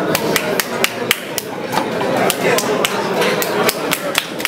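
Scattered hand claps from a few people, sharp and irregular, several a second.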